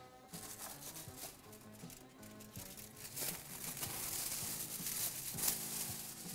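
Aluminium foil being pulled off the roll and handled, a dense crinkling and crackling that grows louder and busier about halfway through, over quiet background music.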